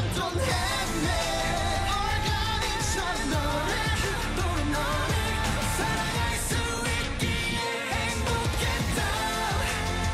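K-pop song sung by a male group over a pop backing track with a heavy beat and bass. The beat and bass come back in right at the start after a short break.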